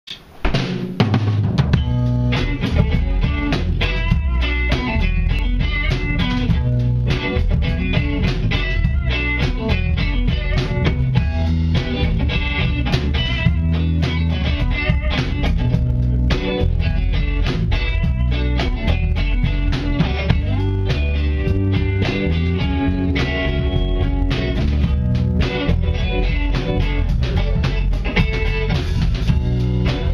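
Live band playing an instrumental passage: electric guitars over a drum kit with bass drum and rimshots, kicking in about a second in and carrying on steadily.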